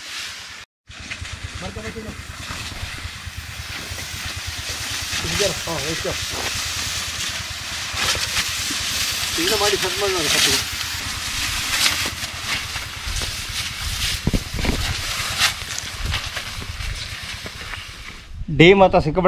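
Hose-fed pesticide spray lance hissing as it mists coffee bushes, over a steady, fast low pulsing drone, with a few faint voices. The sound drops out briefly under a second in.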